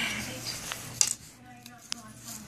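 Handling noise while cardboard is measured: two light, sharp clicks, about a second in and again near the end, over a faint low hum.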